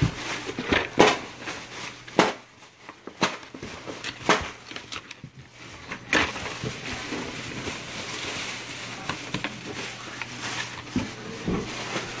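Cardboard boxes and packaging being handled inside a shipping carton: a string of sharp knocks and scrapes over the first six seconds, then a steadier rustling.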